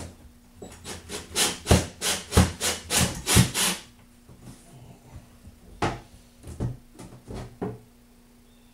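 A screw being driven with a cordless drill into a thin wooden shelf bracket, the wood creaking and cracking in a quick run of loud sharp cracks, about three a second, then five more a couple of seconds later: the bracket splitting under the screw.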